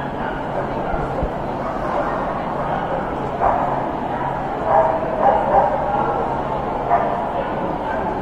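A dog giving short yips and barks, one about three and a half seconds in, a quick cluster around five seconds in and another near seven seconds, over the steady chatter of a large crowd in a hall.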